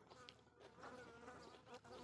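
Faint buzzing of a flying insect. Its wavering hum comes in about half a second in and carries on.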